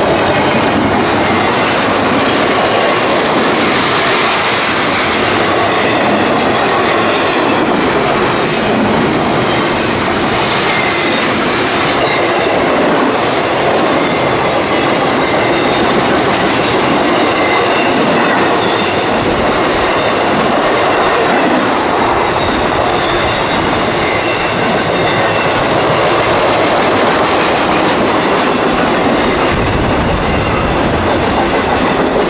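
Intermodal freight cars, double-stack container well cars and trailer-carrying spine cars, rolling past at close range: a loud, steady rush of steel wheels on rail, with a faint high wheel squeal running through much of it.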